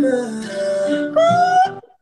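Music: a man singing long, sliding notes over a backing track, with a short break just before the end.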